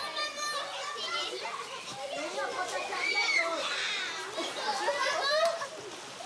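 Children shouting and playing, their high voices overlapping.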